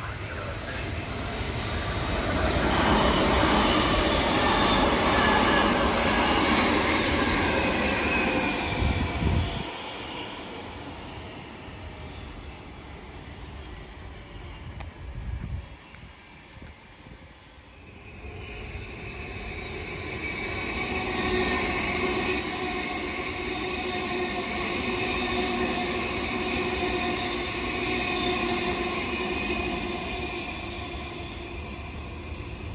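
Queensland Rail electric multiple-unit trains. The first runs in loudly with wheel squeal and cuts off suddenly about ten seconds in. After a quieter stretch a second unit draws in with a steady electric whine that grows louder.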